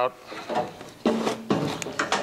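Handling noise from a stick welding lead and its electrode holder being pulled away and moved: rubbing and clunks, with a few sharp clicks near the end.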